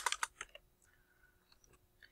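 Computer keyboard typing: a quick run of about six keystrokes in the first half second, then stillness.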